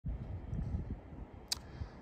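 Quiet outdoor background: an uneven low rumble, stronger in the first second, with one sharp click about one and a half seconds in.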